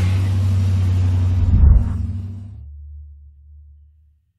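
Cadillac Escalade's V8 engine rumbling as the SUV drives past towing a loaded car trailer. The rumble swells to its loudest about a second and a half in, then fades away.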